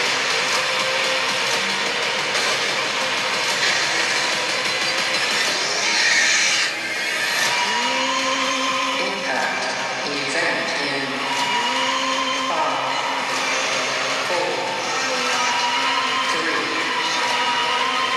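Sci-fi horror film trailer soundtrack: a dense, steady wall of noisy sound effects and score, with held tones that slide up in pitch and hold, several times in the second half.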